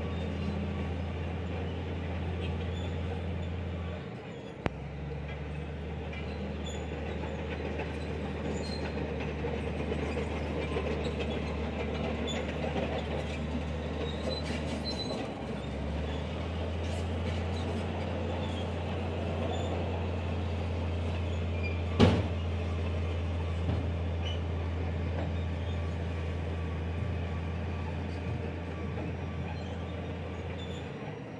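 An engine running steadily with a low hum that dips briefly twice, and a single sharp knock about two-thirds of the way through.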